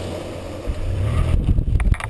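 Wind and road noise on a camera mounted on the side of a moving car: a steady rush with a deep rumble that swells about two-thirds of a second in. A few sharp clicks come near the end.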